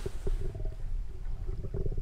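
Muffled low rumble of water recorded underwater through a camera housing, with a fine crackle running through it.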